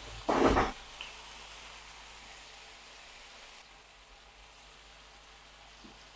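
Thin strips of marinated beef frying in a hot oiled pan on high heat, left unstirred to brown underneath. There is a steady, faint sizzle after a brief louder noise at the start.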